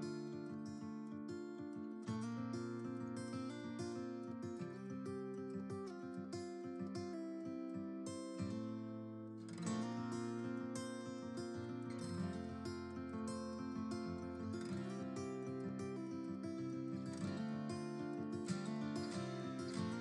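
Background music played on plucked strings, in the manner of an acoustic guitar, with a steady run of notes.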